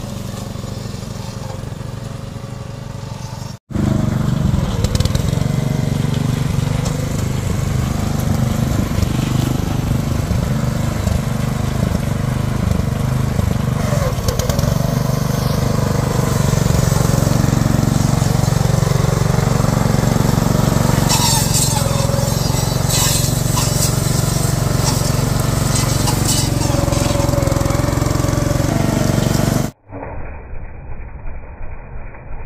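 Engine of a walk-behind Hanseo BH-710A bean harvester running steadily under load as it cuts dry soybean stalks. It is quieter for the first few seconds, then louder after a brief break. Dry stalks and pods crackle through the cutter, most plainly about two-thirds of the way in.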